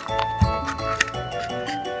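Background music with held notes, over which a purple plastic toy capsule is handled and pulled open: a light knock, then a sharp plastic click about halfway through as the two halves come apart.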